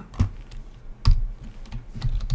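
Computer keyboard being typed on: a few separate keystrokes, the loudest about a second in.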